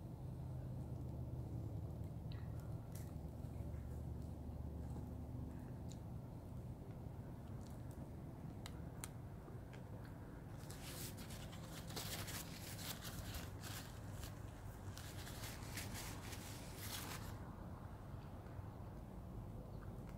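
A person chewing a mouthful of McRib pork sandwich close to the microphone, with a dense run of wet clicks and crackle from about halfway in that lasts several seconds. A low steady hum sits under the first few seconds.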